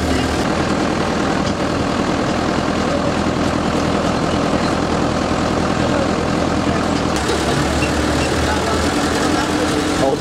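Truck engine running steadily under road and wind noise, heard from the open, canopied back of the moving truck.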